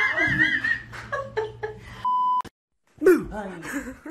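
Laughing and talking voices, then about two seconds in a short, steady electronic bleep tone that cuts off abruptly, followed by a moment of dead silence before voices start again.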